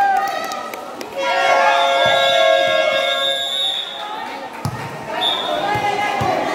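A basketball bouncing on a concrete court, with spectators' voices around it. From about a second in, a loud steady pitched tone holds for nearly three seconds, and a short high tone follows near the end.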